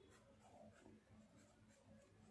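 Near silence, with the faint scratch of a pen writing on notebook paper.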